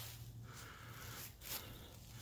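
Faint outdoor background noise, a low steady hiss, with a brief soft rustle about one and a half seconds in.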